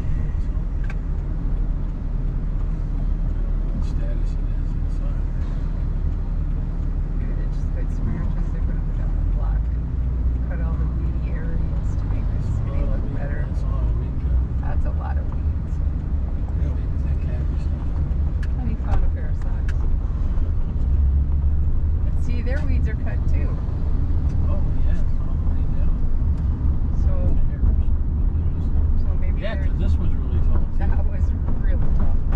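A car's engine and road noise as a steady low rumble inside the cabin while it drives slowly, with faint voices underneath.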